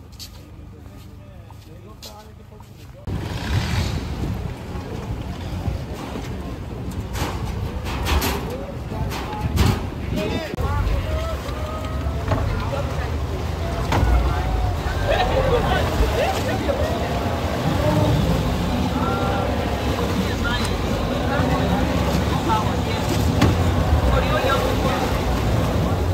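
Tour boat on the water with a steady low engine-and-wind rumble and wind buffeting the microphone, starting abruptly about three seconds in, with people's voices chattering over it.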